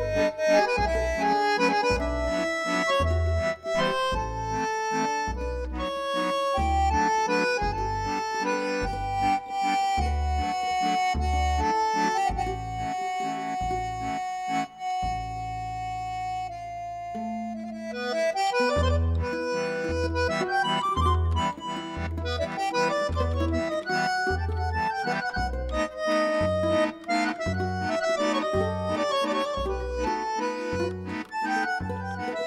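Red piano accordion playing a melody over a steady bass-button beat, with a mandolin accompanying. The beat pauses under a long held note about halfway through, then picks up again.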